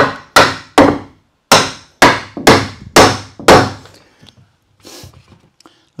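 Claw hammer knocking a pine wall board into place: eight sharp blows over about three and a half seconds, roughly two a second, with a short pause after the third.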